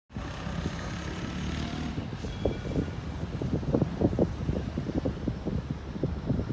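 A steady low rumble of a moving vehicle or passing traffic. From about two seconds in, irregular gusts of wind buffet the microphone.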